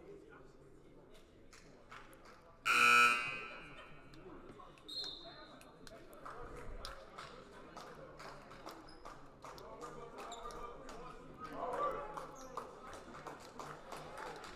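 Gym scoreboard buzzer sounding once, a short loud blast about three seconds in, signalling the end of a timeout. Scattered taps and a low hum of the gym carry on around it.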